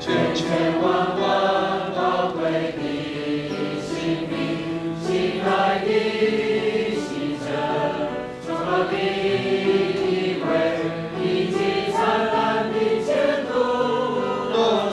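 A congregation singing a Chinese hymn together, in long held notes with short breaks between phrases.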